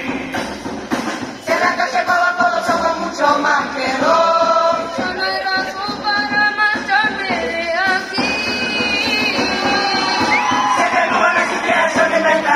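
A youth murga chorus of children and teenagers singing together, many voices in harmony.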